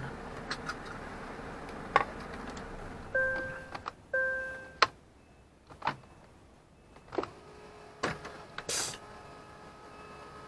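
Two short electronic beeps about a second apart, amid scattered clicks and knocks inside a vehicle cab.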